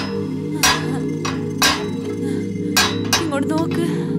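A metal pipe strikes iron window bars with sharp, ringing clanks: three about a second apart, then lighter clinks near the end. Underneath runs a steady low music drone.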